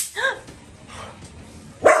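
A dog barks once, a short bark that rises and falls in pitch, just after a brief sharp noise at the start.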